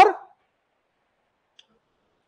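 A man's voice ends one drawn-out word with rising pitch at the very start, then near silence with a single faint click about one and a half seconds in.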